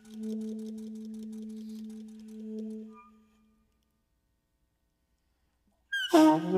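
Alto saxophone holding one soft, low, almost pure note for about three seconds, then fading out. About two seconds of silence follow before loud playing starts again right at the end.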